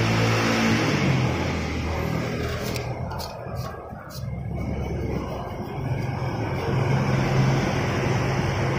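An engine running, with a steady low hum that fades to a dip about halfway through and builds again later. A few light clicks come around the middle.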